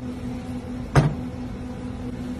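Steady mechanical hum of kitchen equipment, with one sharp knock about halfway through.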